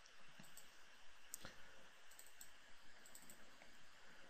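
Near silence: room tone with a few faint computer mouse clicks, the clearest about a second and a half in.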